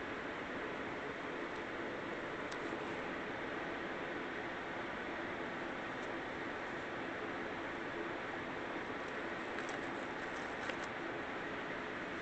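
Steady background hiss of room noise with no speech, broken only by a few faint soft ticks.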